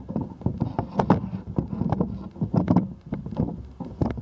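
Handling noise from a camera on a pole as it is swung over a roof: irregular clicks, knocks and rubbing from the pole and mount, with some wind on the microphone.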